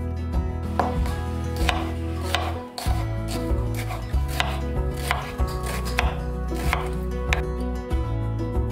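Chef's knife chopping vegetables on a wooden cutting board: a series of sharp knife strikes, about one or two a second, starting about a second in. Soft background music runs underneath.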